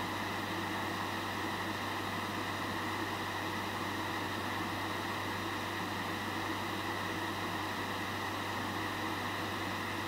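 Steady hiss with a low hum and no distinct sounds: background room tone or recording noise.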